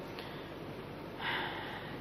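A person draws in a quick, audible breath close to the microphone a little over a second in, lasting about half a second, over a faint steady hiss.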